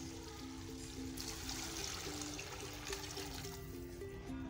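Water pouring into a large metal cooking pot of fried vegetables, starting about a second in, over background music with a stepping melody.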